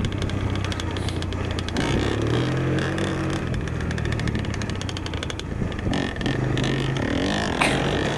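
Honda dirt bike engine running on a rough dirt trail; its note rises about two seconds in and then holds steady. A steady rattle of clicks from the bike jolting over the ground runs with it.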